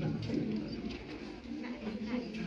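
Low, indistinct voices of people talking quietly, in short murmured phrases.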